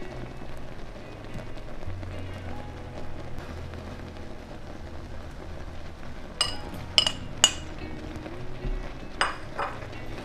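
Thick sugar syrup bubbling and sizzling in a pan on the stove. A little past the middle come three sharp clinks as grated coconut is tipped in and the scoop knocks the pan. Near the end a spoon scrapes and clinks as the coconut is stirred in.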